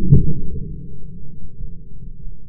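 A single shotgun shot about a tenth of a second in, heard as a muffled low thud with almost no sharp crack, followed by a low rumble.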